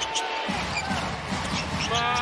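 Live basketball arena sound: a ball bouncing on the hardwood court over crowd noise and arena music.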